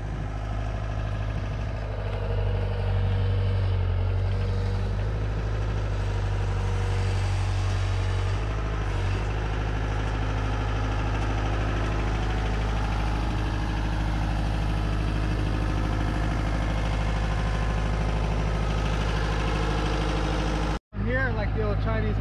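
Diesel engine of a Ditch Witch JT922 horizontal directional drill running steadily at idle, with a slight change in its note about eight seconds in. The sound cuts out briefly near the end.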